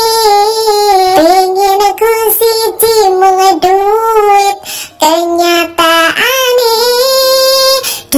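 A woman singing a song in a high voice, without accompaniment, in held, wavering notes, with a short break between phrases about two-thirds of the way in.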